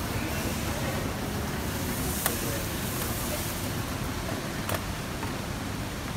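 Steady outdoor background hiss, with two short sharp clicks, one about two seconds in and one near five seconds.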